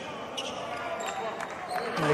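A basketball being dribbled on a hardwood court: several sharp bounces over the low murmur of the arena.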